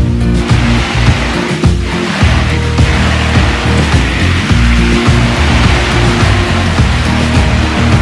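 Background music with a bass line and held chords.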